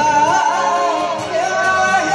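A woman singing into a microphone with electronic keyboard accompaniment, her melody bending through quick ornamented turns.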